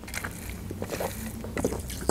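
Drinking cola through a straw from a glass bottle: a few quiet sips and swallows.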